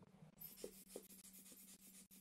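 Air blower (soufflette) puffing air, a faint hiss that starts about half a second in.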